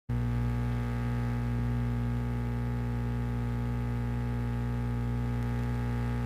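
Steady electrical mains hum, a buzz with a long run of overtones that does not change.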